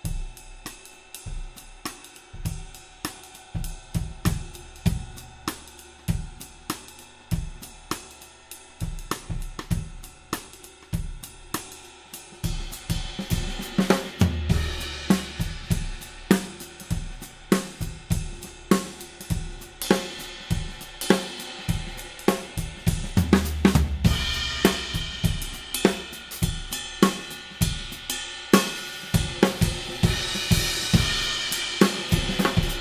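Drum kit played with sticks in a steady groove: a thick, heavy Dream Bliss 22-inch Gorilla Ride cymbal over snare, hi-hat and kick drum. The cymbal wash grows brighter and louder from about halfway through, with heavier kick strokes.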